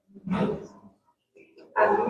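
A man's voice gives one short, loud exclamation, and speech starts again near the end.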